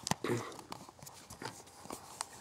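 A few faint, irregular clicks and knocks with light rustling: handling noise from the camera as it is moved.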